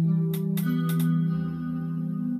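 Skervesen electric guitar through a Fractal Axe-FX ringing out a close-voiced C major 7 in first inversion (E, G, B, C), a stretch from the seventh fret to the first. One more note joins about half a second in.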